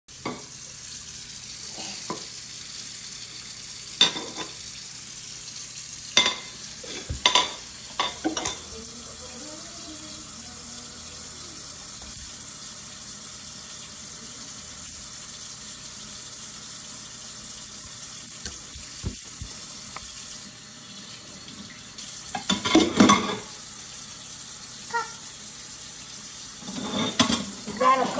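Kitchen faucet running steadily into a stainless steel sink as dishes are rinsed under it, with scattered knocks and clatters of dishes, a cluster early on and another a little before the end.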